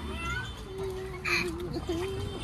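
A toddler's long, drawn-out excited cry at a nearly steady pitch, with a brief hiss about midway.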